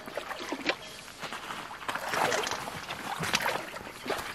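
Shallow muddy stream water sloshing and splashing as a wooden pole is jabbed in among submerged tree roots and branches, with scattered short knocks. The splashing is loudest about two seconds in.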